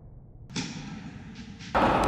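A tennis racket strikes the ball on a forehand about half a second in, with a short echo of an indoor hall after it. Near the end a much louder steady noise starts abruptly.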